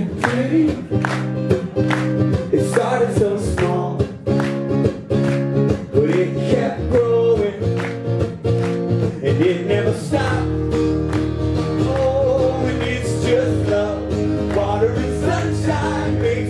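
Live acoustic guitar strummed in a steady rhythm, with a man's voice singing over parts of it; about ten seconds in the chord changes to a lower one that rings on under the strumming.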